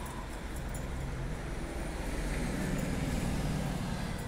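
Motor vehicle engine running close by over a background of traffic noise, its low rumble growing louder in the second half.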